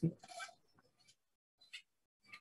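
A man's voice finishing a word, then near silence from about half a second in.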